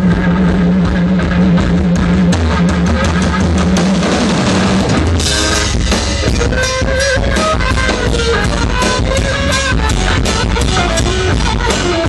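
Live rock band playing, with electric guitars and drum kit and no singing. A low note is held for about the first five seconds. Then the full band comes in, with steady cymbal hits and a lead guitar line bending in pitch.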